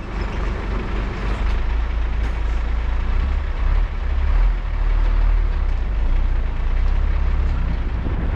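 Car transporter truck on the move, heard from a camera on top of the minibus it carries: a steady low engine rumble under a haze of road noise, a little louder in the middle.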